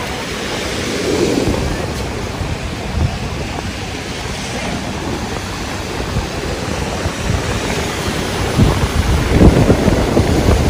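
Ocean surf washing onto a sandy beach, heard as a steady rush, with wind buffeting the microphone in gusts that grow stronger near the end.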